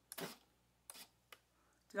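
A few short, soft handling noises and a sharp click from the foam eagle model being held and worked at its bottom flap.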